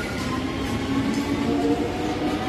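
Southern Railway suburban EMU train running past along the platform: a steady rumble of the moving coaches with a hum that rises slightly in pitch.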